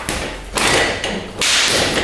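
Three whooshing bursts, each a little under a second long and following one another closely, as a man does quick jackknife sit-ups (V-ups) on a weight bench.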